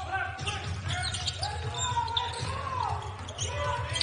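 A basketball being dribbled on a hardwood court, with faint voices in the background.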